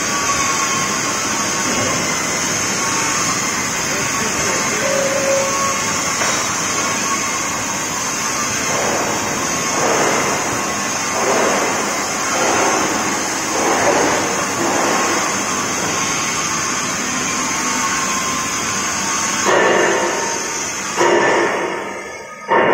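Gantry drilling machine running steadily as its spindles drill steel plate under coolant spray, a continuous high-pitched whine over a broad machine-shop noise. About halfway through there is a series of regular louder pulses, roughly one a second.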